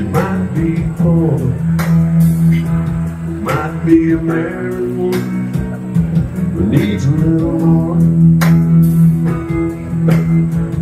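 Live music from a solo performer: an amplified guitar playing sustained chords, with a man singing now and then.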